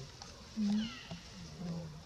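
Macaque calls: a short, loud call about half a second in, then lower, longer calls toward the end.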